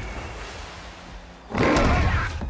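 Low storm rumble fading, then about one and a half seconds in a sea monster's sudden loud screeching roar, film sound design for a Trench creature.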